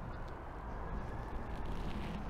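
Quiet, steady outdoor background noise with a low rumble and no distinct events.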